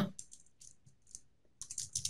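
Computer keyboard typing: scattered single keystrokes, then a quicker run of keys near the end.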